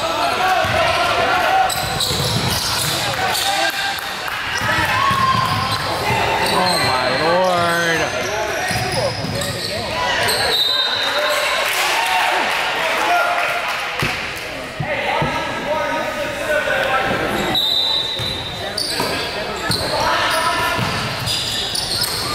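Basketball game in an echoing gym: players and spectators shouting and calling out over one another, with a basketball bouncing on the hardwood court and a few short, high squeaks.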